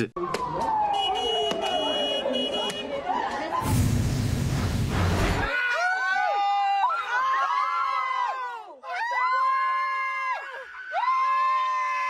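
A person screaming repeatedly, several long high cries about a second each starting around halfway through, at a black bear opening a parked car's door. Before that, a falling tone and a brief loud rush of noise.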